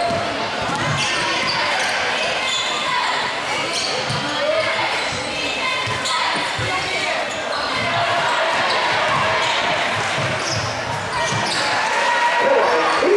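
Basketball dribbled on a hardwood gym floor during live play, with a crowd of spectators talking and calling out, all echoing in a large gymnasium.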